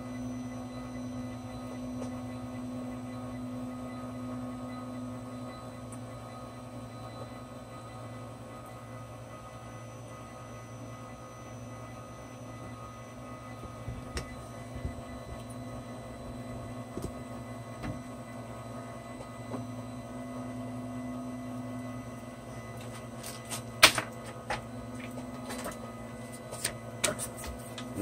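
The Z-axis stepper motor of a Monoprice Maker Ultimate 3D printer drives the build plate up its lead screw, a steady motor hum. A few sharp clicks come near the end, one louder than the rest.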